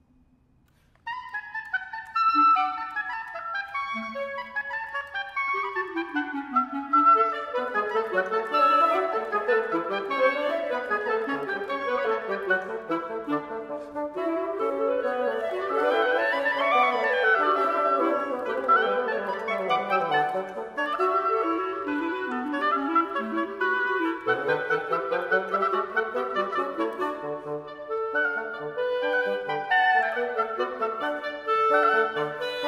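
Oboe, clarinet and bassoon playing together as a woodwind trio, a classical chamber piece; after about a second of silence the three instruments come in and keep playing with moving, interweaving lines.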